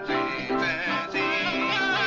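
Two men's voices singing a song together with plucked-string instrumental accompaniment.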